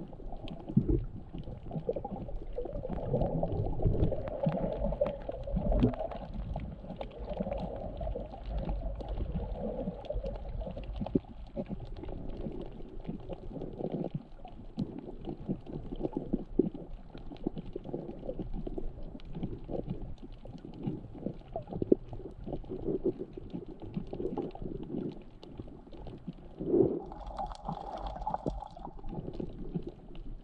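Underwater water noise, muffled and low. Water moving, with a steady stream of small crackles and knocks, and a brief louder burst near the end.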